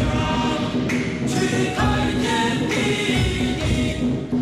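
Ritual chanting sung to music, with voices held on long notes and sliding between pitches over a steady low drone.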